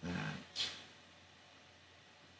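A man's voice saying a single word, followed about half a second in by a short hiss that fades over a few tenths of a second.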